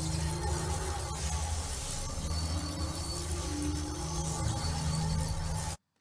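Sci-fi portal-travel sound effect: a dense electronic rushing noise over a low hum, cutting off suddenly near the end.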